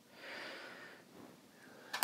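A man's faint breath out, a soft noise with no pitch, lasting under a second shortly after the start.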